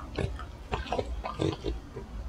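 French bulldog chewing a treat with its mouth open: irregular wet, smacking chews, a few a second.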